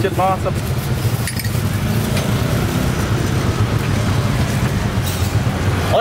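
Steady low engine rumble of street traffic, with a few faint clinks.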